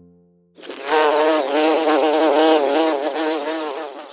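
A bee buzzing: a steady drone whose pitch wavers up and down several times a second, starting about half a second in.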